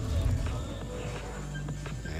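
A TV sports broadcast's graphic-transition stinger: a short low whoosh at the start, over background music.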